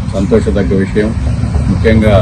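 A man speaking Telugu, over a steady low rumble.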